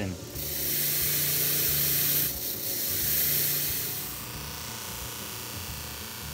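Bench motor running a polishing wheel, with a brake caliper piston pressed against the spinning wheel to buff it: a steady motor hum under a rubbing hiss. The rubbing is louder for about the first four seconds, then eases.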